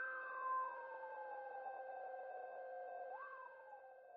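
Electronic outro sting: held synthesizer tones under one tone that glides slowly downward, with a short upward swoop about three seconds in, fading out near the end.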